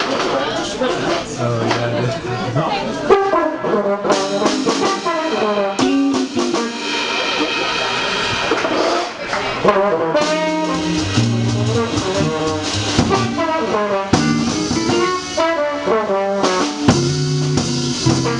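Tenor trombone playing a jazz melody live, backed by electric guitar, upright bass and drums.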